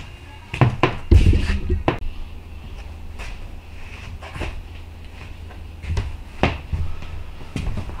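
Knocks and thumps of tools and parts being handled in a workshop, heaviest in a cluster about a second in, then a few scattered clicks, over a steady low hum.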